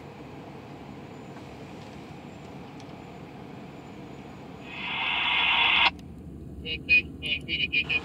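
Steady low rumble, then a rising hiss about five seconds in that cuts off suddenly. It is followed by short bursts of voice transmissions over a railroad scanner radio.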